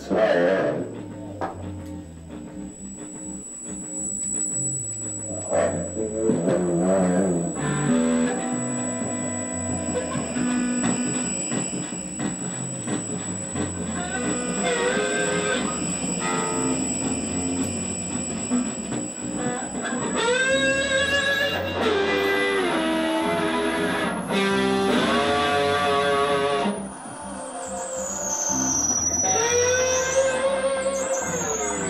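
Rock band music led by guitar. In the second half, long held notes slide up and down in pitch.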